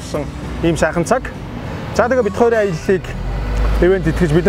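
A person speaking in short phrases over road-traffic noise, with a low rumble that builds near the end.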